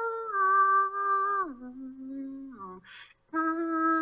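A voice humming a slow line of long held notes, played back dry without a phaser effect. The pitch steps down about a second and a half in, and after a short breath a new note starts near the end.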